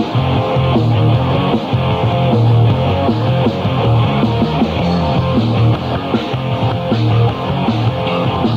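Thrashcore band playing live, with electric guitar to the fore over a dense, steady wall of band sound and no vocals.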